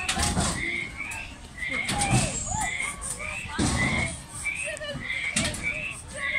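Background voices of people around a frog-themed children's ride. A knock comes back about every second and a half to two seconds, and a short high chirp repeats about twice a second.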